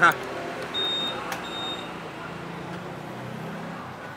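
Two short, high electronic beeps from a Honda Air Blade 150 scooter's beeper as it is handled, with a click between them and a faint low steady hum underneath.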